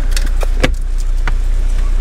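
A dog getting out of a car through the open front door, its collar tags jingling in a few sharp clicks, over the steady low hum of the car's idling engine.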